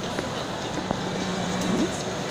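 Steady background noise of a busy shopping-mall hall, with faint voices in it and two brief clicks, the second about a second in.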